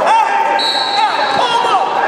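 Busy indoor gym sound: a run of short shoe squeaks on the floor, with a steady high whistle blast starting about half a second in and lasting under a second. There are occasional dull thuds and voices in the background.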